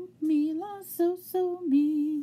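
A woman singing a short unaccompanied phrase of four or five short notes, the last one lower and held longest.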